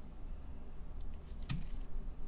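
A few separate computer keyboard key clicks in the second half, over a low steady hum.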